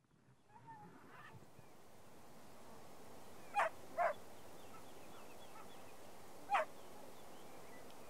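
Outdoor ambience fades in from silence, and a bird gives three short, sharp calls: two about half a second apart a little past three seconds in, and one more about three seconds later. Fainter chirps sound in the background.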